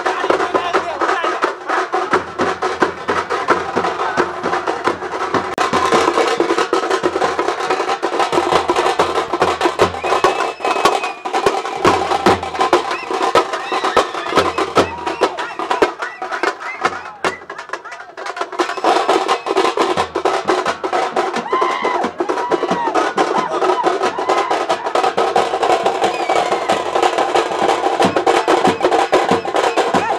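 Tamil street drum band, thappu frame drums and a stick-beaten two-headed drum, playing a fast, dense rhythm, with a crowd shouting over it. The drumming thins briefly a little past the middle, then picks up again.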